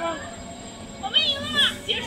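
Voices of people talking close by, with a child's high voice rising and falling about a second in.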